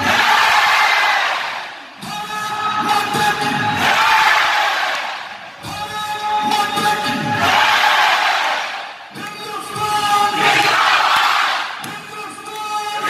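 A man's long drawn-out shout over loudspeakers, answered each time by a roar from a large crowd, in a call-and-response that repeats about every three and a half seconds.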